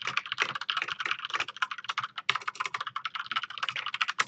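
Fast typing on a computer keyboard: a rapid, unbroken run of keystroke clicks.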